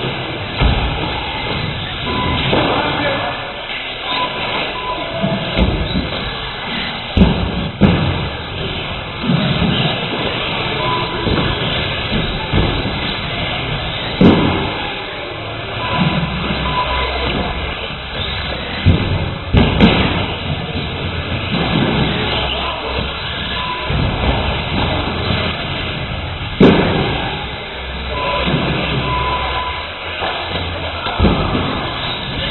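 Radio-controlled cars running on an indoor track, with several sharp thuds and knocks scattered through as the cars hit the track, over the steady noise and voices of a large hall.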